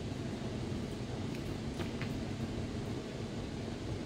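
Room air conditioning running with a steady hum and hiss. A few faint ticks come about one and a half to two seconds in.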